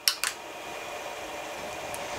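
A 3D-printed plastic filament spool being handled and turned in the hands: two quick clicks at the start, then a steady rubbing hiss.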